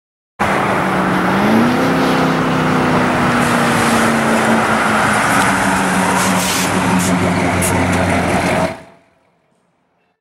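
1968 Pontiac Bonneville's V8 engine running as the car drives past, its note rising about a second in as it picks up speed, then holding steady. The sound cuts off near the end.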